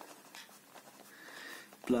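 Pen writing on paper: faint scratching strokes of handwriting, with a word of speech coming in just at the end.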